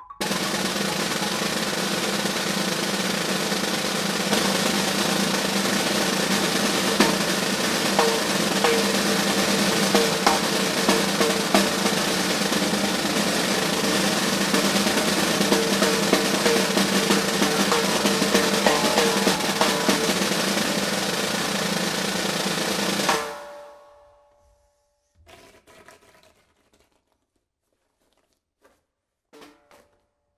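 Snare drum played by two players at once in a continuous loud roll, with accented strokes standing out, starting suddenly and cutting off abruptly about 23 seconds in. A few faint knocks follow.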